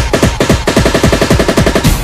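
A rapid volley of sharp percussive hits, about a dozen a second, like machine-gun fire, cut into a music soundtrack. Each hit drops in pitch.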